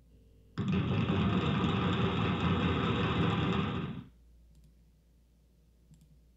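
Applause: a burst of clapping that starts suddenly about half a second in, runs steadily for about three and a half seconds and cuts off abruptly.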